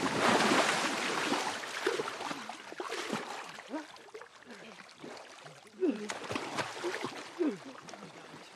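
A heavy splash as a man is thrown down into shallow water, then water sloshing with short grunts and gasps from the men struggling in it.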